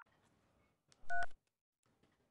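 A single telephone keypad beep: one short two-pitch touch-tone about a second in, lasting about a third of a second, with near silence around it.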